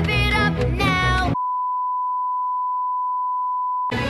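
Upbeat theme-song music cut off about a second in by a single steady 1 kHz censor bleep, which replaces the music for about two and a half seconds. The music comes back right at the end.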